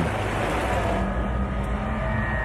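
Steady rushing roar of a large fire, with a deep rumble beneath it and a faint held tone over it.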